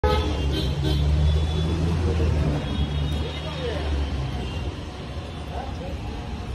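Street noise: a motor vehicle engine runs close by with a steady low hum, then fades over the last couple of seconds, with voices in the background.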